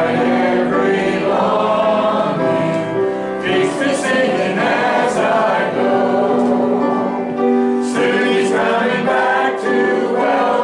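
Small mixed choir of men and women singing a hymn, the voices holding long, steady notes.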